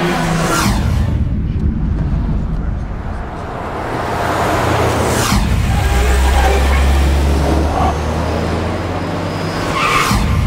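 Car engines and tyres as cars pass, each pass a falling whoosh, about half a second in and again about five seconds in; a low engine rumble is loudest in the second half.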